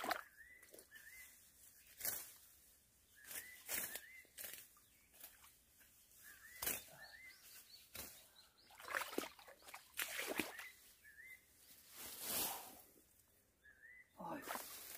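Leaves and branches of a berry shrub rustling every second or two as berries are picked from it by hand. A bird repeats short rising chirps faintly throughout.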